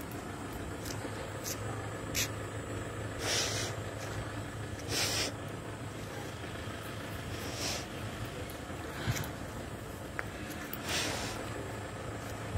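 A woman sniffing close to the phone's microphone, four louder sniffs a couple of seconds apart with fainter ones between, over a steady low hum of street traffic.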